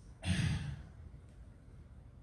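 A man sighs once, a short breath out lasting about half a second, a quarter of a second in.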